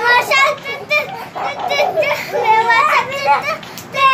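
Several young children's voices, excited shouting and chatter with swooping pitch while they play.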